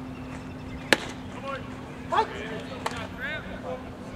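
A single sharp pop about a second in, a pitched baseball smacking into the catcher's mitt, with a lighter click near the end. Voices call out in between, over a steady low hum.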